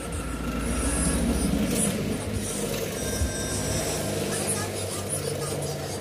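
An old bench drill press running, its bit cutting into a steel workpiece, with a steady motor hum.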